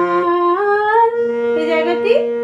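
Harmonium reeds playing a slow melody one note at a time, stepping upward in small moves, with a voice humming along. A steady lower note enters a little after a second in.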